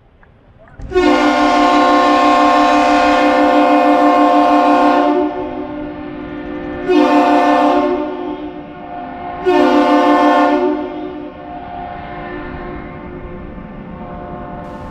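Ship-canal horn salute, the captain's salute of one long blast followed by two short blasts, the greeting exchanged between an arriving laker and the Duluth Aerial Lift Bridge.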